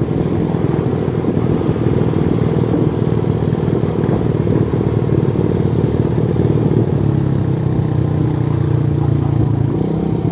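Motorcycle engine running steadily at cruising speed while riding, mixed with a low rumble of wind on the microphone.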